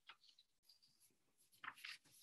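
Near silence: faint room tone over a microphone, with a few soft clicks and rustles and a slightly louder rustle near the end.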